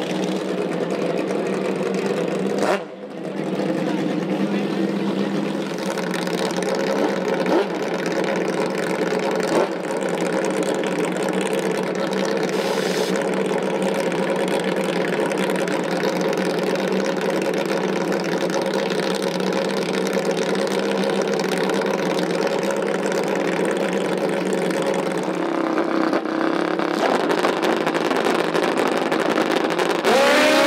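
Pro Nitrous drag motorcycle engine idling steadily while staged at the starting line, holding one even pitch with no revving until just before launch.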